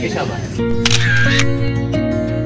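Speech that breaks off about half a second in, giving way to background music. About a second in, a camera shutter sound effect plays over the music.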